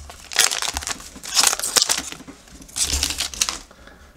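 Foil wrapper of an Upper Deck hockey card pack being crinkled and pulled apart by hand, in three crackly bursts.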